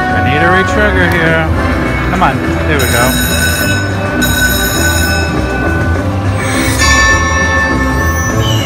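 Aristocrat Buffalo Gold video slot machine playing its free-games bonus music and sound effects. Swooping calls come in the first three seconds, then a held chiming jingle sounds for about three seconds as five more free games are awarded, and another chime comes near the end.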